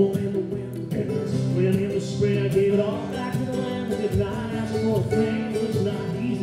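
Acoustic guitar strummed in a steady rhythm under a mandolin picking a melody: a live instrumental passage of an acoustic folk-rock song.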